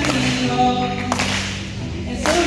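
Live singing through handheld microphones over music, with a held note in the first half and a sharp percussive hit about a second in.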